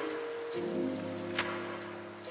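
Lo-fi piano music over a steady hiss of rain. A new, lower piano chord comes in about half a second in, and a single sharp click sounds a little past the middle.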